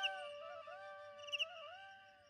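Bamboo flute (bansuri) phrase dying away: a short gliding figure repeats more and more faintly, about every 0.7 s, and fades out by the end.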